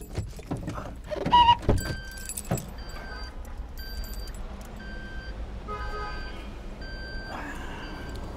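Car keys jangling with clicks and knocks as the driver moves about his seat, loudest about a second and a half in. Then the car's warning chime beeps steadily about once a second for several seconds, typical of a door-open or key-left-in-ignition warning.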